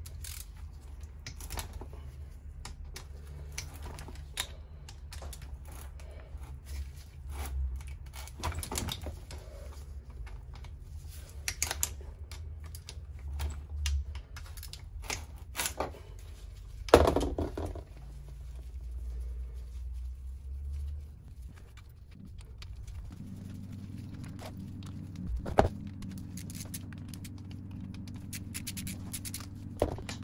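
Ratchet wrench clicking as it loosens the cylinder head nuts of a KTM SX 85 two-stroke engine, with scattered light metal clicks of tools and nuts and a sharper knock about halfway through and another later on. A low steady hum runs underneath.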